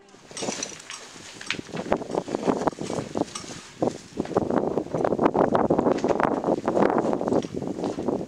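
Outdoor sound of a group of hikers moving over rock: indistinct voices, rustling of clothing and gear, and wind on the microphone, growing louder and denser about halfway through.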